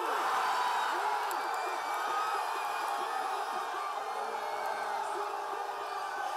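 Crowd of football fans breaking into loud cheering and yelling at their team's goal, starting suddenly and holding steady with many voices at once.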